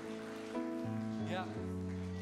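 Soft worship music: sustained keyboard chords, the chord changing about a second in and again near the end.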